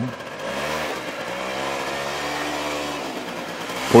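Small motor scooter's engine revving as it pulls away, its pitch rising and falling as the rider accelerates.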